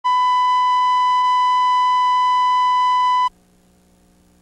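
Steady, high test tone on a video tape's countdown leader, running loud and unchanging, then cutting off suddenly a little over three seconds in.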